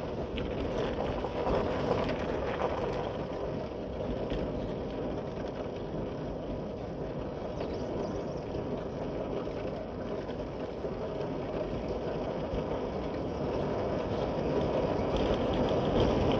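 Motorcycle being ridden at a steady pace, its engine drone blended with wind and road noise, with no distinct changes.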